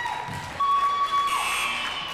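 Sneakers squeaking on a hardwood gym floor: two high, drawn-out squeaks, the second about half a second in and bending down in pitch as it stops, followed by a brief burst of hiss.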